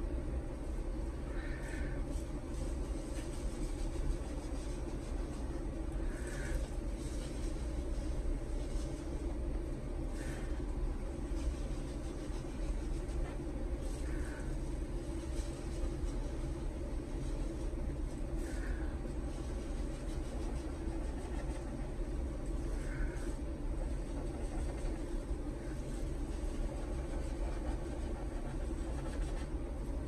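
A steady low rumble of background noise, with a faint short higher sound roughly every four seconds.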